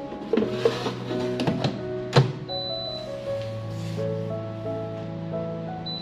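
Background music, over which an air fryer basket is pushed home with a few clicks and one sharp knock about two seconds in, followed by a short high electronic beep from the air fryer's touch panel and another near the end.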